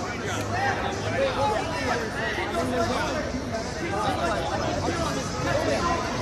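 A crowd of spectators' voices, many people talking and calling out over one another, steady throughout.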